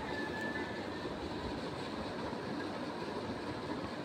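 Sliced onions frying in hot oil in an aluminium pressure cooker, giving a low, steady sizzle.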